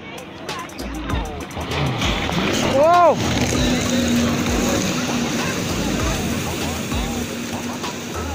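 Yamaha jet ski accelerating away, its engine and the rush of water getting louder about two seconds in and then running steadily. A short rising-and-falling tone about three seconds in is the loudest moment.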